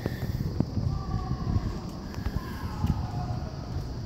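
Outdoor city ambience with wind rumbling on the phone's microphone.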